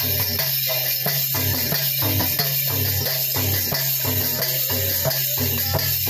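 Chhattisgarhi Panthi folk music: a fast, steady drum rhythm with repeating bass notes and a constant jingling shimmer of small percussion.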